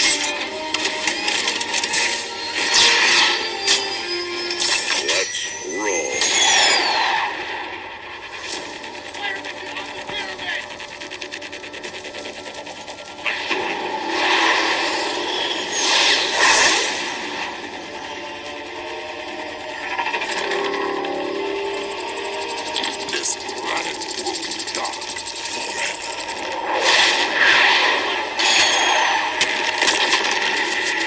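Film soundtrack: a musical score under a dense run of metallic mechanical sound effects, with clanks, whirs and short high gliding whines as robot parts lock together.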